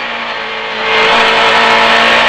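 Rally car engine heard from inside the cabin, running at steady high revs on a snowy stage, with a dense rush of road and underbody noise. The sound grows clearly louder about a second in and stays there.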